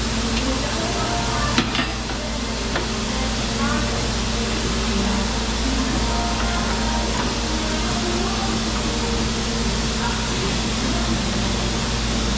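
Steady workshop background noise, like a fan or air system running, with a constant low hum and faint background voices. A single sharp metallic click comes about one and a half seconds in.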